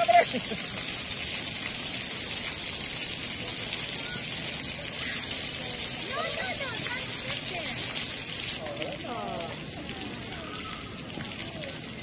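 Splash pad water jets spraying with a steady hiss. About two-thirds of the way through, the jets shut off and the hiss drops to a lower level.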